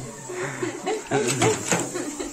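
Indistinct speech: a person's voice talking, with no clear words.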